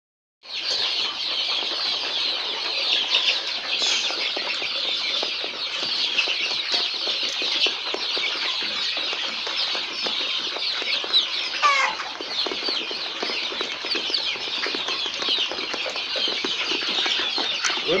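A flock of brown laying hens in a coop makes a steady, dense chatter of many short, high-pitched calls and clucks. Around the middle, one louder call slides down in pitch.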